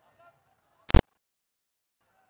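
Faint crowd voices, then about a second in a single very loud, sharp crack lasting a split second, after which the sound drops out to dead silence.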